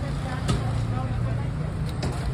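Steady low hum of street noise with people talking in the background, and one short click about half a second in.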